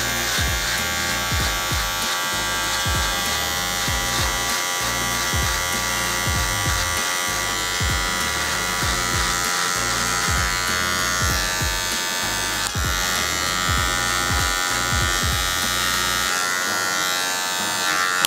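Electric hair clipper buzzing steadily as its blade cuts the line of a skin fade into the hair at the side of the head.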